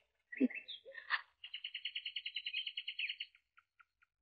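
A bird calling: a few short chirps, then a rapid high trill of about ten notes a second lasting about two seconds, trailing off into a few last notes.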